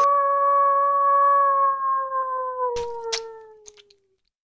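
A single long wolf howl that starts suddenly on one held note, then slides slowly downward and fades out near the end. Two sharp clicks sound about three seconds in.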